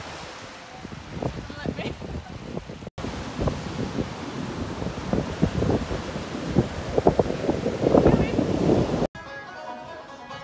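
Surf breaking on a beach with strong wind gusting on the microphone, loudest about eight seconds in. It cuts off abruptly near the end, where plucked-string music begins.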